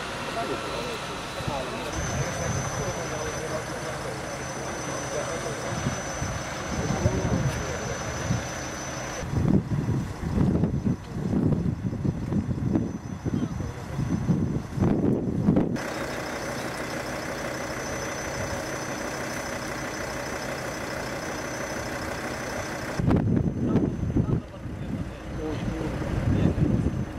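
Steady idling of vehicle engines with a thin, steady high whine over it, broken twice by stretches of people talking.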